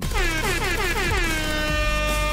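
Air horn sound effect: a rapid stutter of short repeated blasts that settles into one long held blast.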